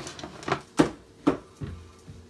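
Flip-style rotating waffle maker being turned over on its stand: a run of about five clunks and clicks over two seconds, the loudest in the middle.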